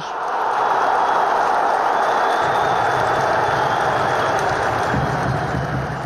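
Football stadium crowd cheering a goal: a steady wash of crowd noise that swells up at the start and holds.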